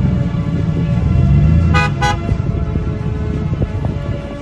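Vehicle horn tooting twice in quick short beeps about two seconds in, over the low rumble of vehicles driving slowly past.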